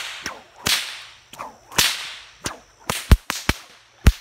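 Bullwhip cracking repeatedly as it cuts into a weed plant: a string of sharp cracks, each trailed by a swishing hiss, coming faster near the end.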